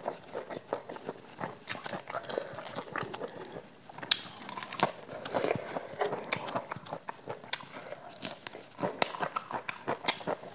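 Close-miked chewing of fried chicken and rice: wet mouth smacks and crunching, many short sharp clicks coming irregularly throughout.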